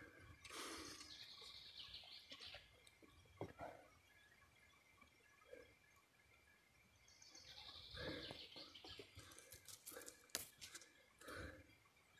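Near silence: faint rustling with a few soft clicks, the rustle coming in two short stretches, just after the start and again about seven to nine seconds in.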